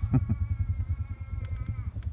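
Motorbike engine idling with a fast, even low chug. Over it a long steady higher tone with several overtones sags slightly in pitch and fades out near the end.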